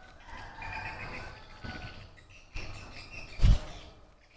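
Faint birds chirping in the background, with a single dull thump about three and a half seconds in.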